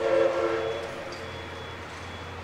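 A train's whistle sounds once, a short blast of about a second made of several tones together, fading away.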